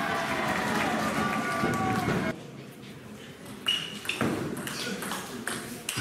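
Raised voices in the hall for the first two seconds, then a table tennis rally: the celluloid ball clicking sharply off bats and table, several quick hits in the second half.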